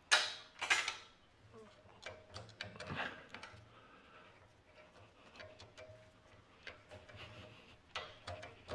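Half-inch steel bolts being dropped through a steel vise base plate into holes in a steel welding table. Two sharp metallic clinks come near the start, followed by a run of faint small clicks and taps.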